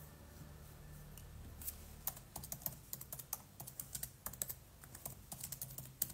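Typing on a keyboard: a run of quick, irregular key clicks starting a little under two seconds in, over a faint low hum.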